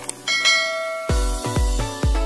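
A click sound effect, then a short bell chime with a held ringing tone, then electronic dance music with a heavy bass beat kicks in about a second in.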